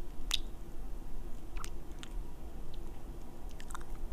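Close-miked wet kissing and lip-smack sounds made right into a microphone. There is one sharp smack about a third of a second in, a few scattered softer ones, and a quick cluster of smacks near the end.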